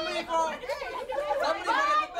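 Several people's voices talking and calling out over one another, with a man's raised voice among them.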